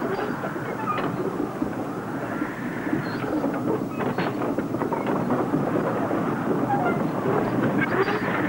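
A water pump working up and down, giving a steady mechanical noise with a few faint clicks. It is running dry and not yet drawing water because it has not been primed.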